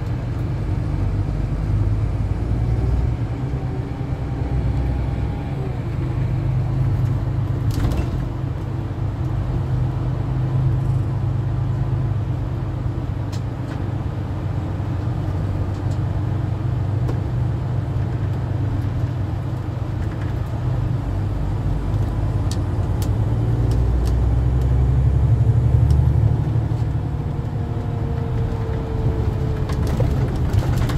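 Inside a moving coach: steady low engine and road rumble, with a faint whine that rises and falls with speed. The rumble swells briefly a little before the end. A sharp click comes about 8 seconds in, and a few faint ticks follow later.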